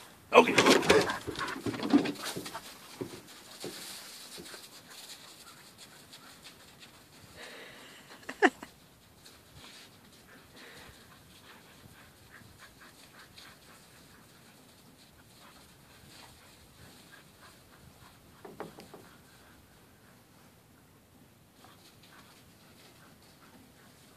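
Dog vocalising excitedly: a loud burst of sounds over the first two seconds, one short sharp sound about eight and a half seconds in, and a fainter one near nineteen seconds, with a quiet background in between.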